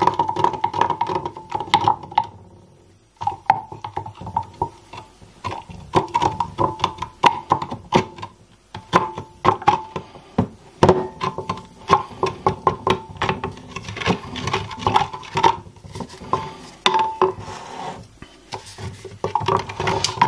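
Wooden spoon stirring caustic soda (sodium hydroxide) into water in a glass jug, knocking against the glass over and over in a quick, irregular rhythm so that the jug rings. There is a short pause about two seconds in.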